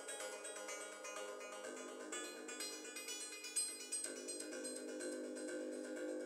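Modular synthesizer playing a quick, uneven sequence of short, bright percussive notes at several notes a second, with the notes' tails smeared by delay and reverb. The notes come from an oscillator in percussive mode, triggered at random by a chaos gate and quantised to a scale.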